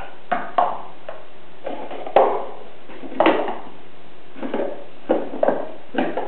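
Toy alphabet stacking cubes being knocked over and tumbling onto a rug: a handful of light, separate knocks spread over several seconds, the sharpest about two seconds in.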